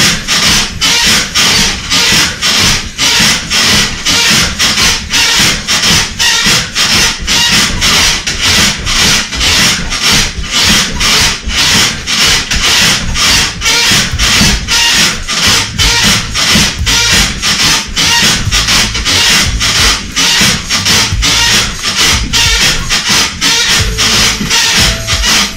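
Mini-trampoline (rebounder) springs and mat giving a rhythmic rasping creak with each bounce, about two to three times a second, over background music.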